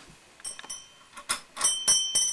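Sharp metallic clicks and clinks, sparse at first and then quicker and louder, with a high bell-like ringing setting in near the end.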